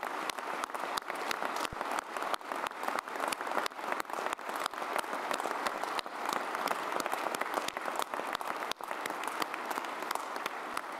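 Large audience and officials on stage giving sustained applause, a dense mass of hand claps in a large hall, going on for the whole stretch.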